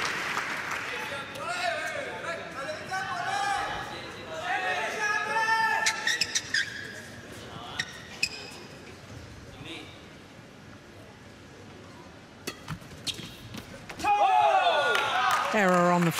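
Voices between badminton rallies, then a quieter stretch with a few sharp knocks, with voices rising again near the end.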